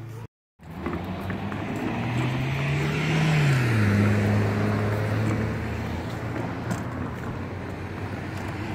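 A car passing on the road: traffic noise swells to a peak about three to four seconds in, its engine note dropping in pitch as it goes by, then fades slowly. A short gap of silence comes right at the start.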